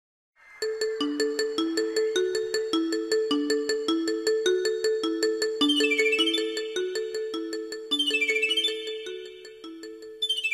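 Short electronic intro jingle: a quick repeating pattern of plucked, bell-like notes starting about half a second in, with flourishes of high glittering chimes, fading near the end.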